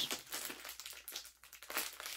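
Plastic pouch holding a Cirkul flavour cartridge crinkling as it is handled and pulled open by hand, in irregular rustles that ease off briefly in the middle.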